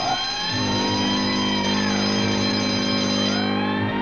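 A ship's horn sounding one long blast of several steady tones at once, starting about half a second in and fading out near the end, with higher steady tones and slow rising and falling glides above it.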